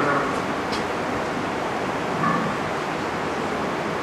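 Steady hiss of background noise, with a brief faint sound of a voice about two seconds in.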